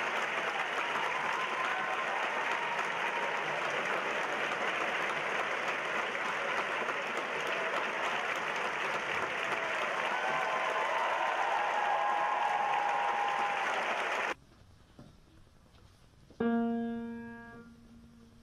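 Concert audience applauding steadily for about fourteen seconds, with a few faint cheers in it, until it cuts off abruptly. A couple of seconds later a single piano note is struck and rings away.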